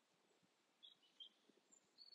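Near silence, with two faint, short, high bird chirps about a second in.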